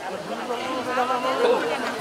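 Crowd chatter: several people talking at once, with no single clear voice.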